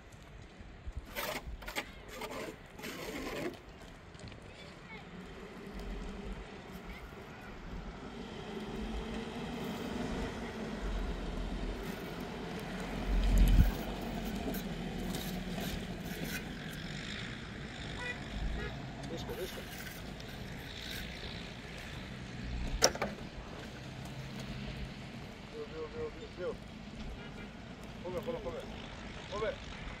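A few quick footsteps on stony ground, then a pickup truck's engine running as it drives slowly over dirt, with a loud low thump about halfway through and a sharp knock later.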